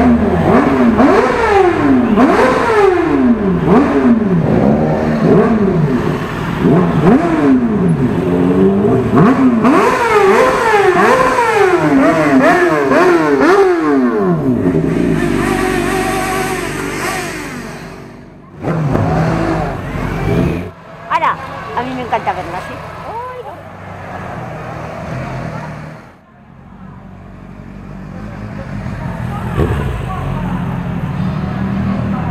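Motorcycle engines revving and accelerating as several bikes ride past, the engine pitch climbing and dropping again and again for about fourteen seconds. After that the engine sound dies down to a quieter stretch.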